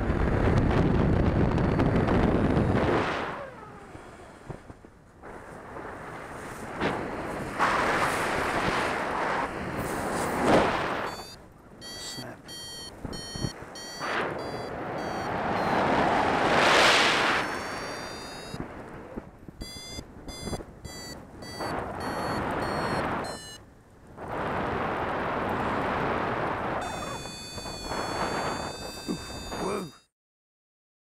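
Wind buffeting the microphone of an action camera carried by a paraglider pilot in flight, rising and falling in gusts. From about a third of the way in, a variometer beeps in short pulses, holding a steadier tone near the end.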